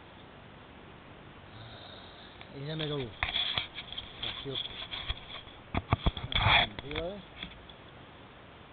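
Handling noise of a handheld camera: a few sharp clicks about six seconds in, followed by a breathy sniff, between a man's short muttered words.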